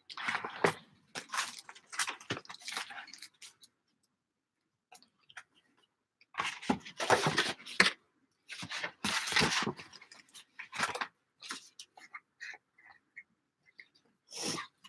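Close handling noise at a craft desk: paper rustling and sliding, with small jars and their lids being set down and opened, in several bursts of rustling and clicks, then a few scattered ticks near the end.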